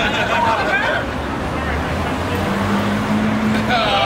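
City street sound: a steady low traffic rumble with a vehicle's even drone in the second half. Voices talk at the start and again near the end.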